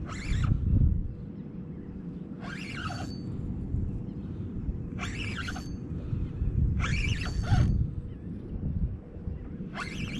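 Spinning reel working in five short bursts about two seconds apart while a heavy fish is fought on the rod, over a steady low rumble.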